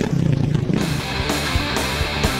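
Hard rock music with electric guitar and a steady drum beat, coming in just under a second in, over the tail of a dirt bike's engine that dies away in the first moment.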